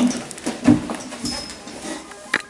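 Wooden classroom chairs scraping and knocking on the floor as several people pull them out and sit down, with a brief high squeak about a second and a half in.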